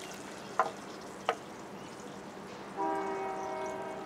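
Train horn sounding one long steady chord of several notes, starting near three seconds in, over the steady sizzle of fish frying in hot oil. Two light clicks come in the first second and a half.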